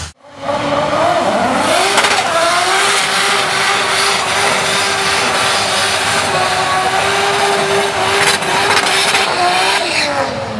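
Car doing a pre-race burnout, rear tyres spinning and squealing. The engine revs up about a second in, holds a steady high rev for several seconds under the hiss of the tyres, and drops away near the end.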